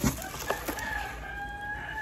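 A rooster crowing once, one long held call lasting most of two seconds. A few light knocks from handling come near the start.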